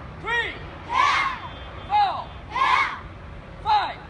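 A taekwondo drill in call and response: an instructor's single short called command, three times about a second and a half apart, each answered by a group of children shouting together in unison.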